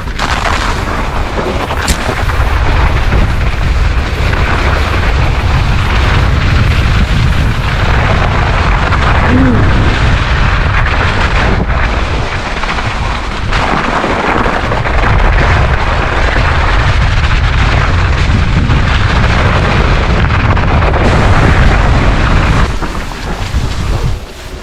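Wind buffeting the on-bike camera's microphone as a loud, steady low rumble while an e-mountain bike rides down a snow-covered track, with rolling noise from the tyres mixed in. It drops away shortly before the end.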